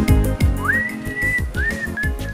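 Soundtrack music with a steady beat and sustained low notes, carrying a high whistle-like lead melody that slides up twice into long held notes.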